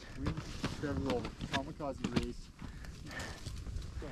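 Skiers' voices calling out in a few short shouts, from about a second in to just past the middle, with scattered clicks and scuffs of skis and poles in snow.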